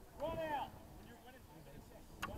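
A person's shout, about half a second long, shortly after the start, with no clear words, over faint open-air background.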